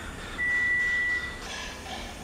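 A single steady high-pitched electronic beep lasting about a second, starting about half a second in, over a low background hum.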